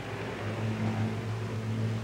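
Steady low drone of a propeller plane's engine in flight, growing a little louder about half a second in, over an even hiss.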